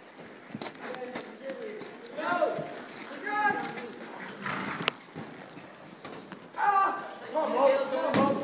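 Several people shouting and calling out in short wordless bursts, with a few sharp knocks in between.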